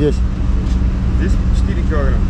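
A steady low motor hum runs under a short spoken exchange: a question at the start and a brief answer about a second in.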